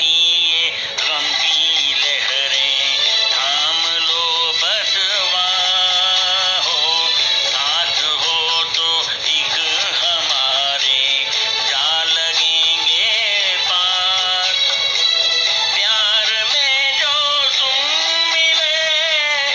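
A song playing: a singing voice with wavering, drawn-out notes over a music backing.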